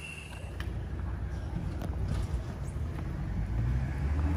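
A steady high insect buzz from the roadside forest stops about half a second in. After that a low road-traffic rumble grows steadily louder as a vehicle approaches on the road.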